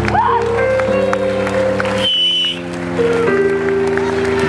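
Rock band playing live, with sustained chords that change about once a second. A brief high whistling tone sounds about halfway through, as the low notes drop back for a moment.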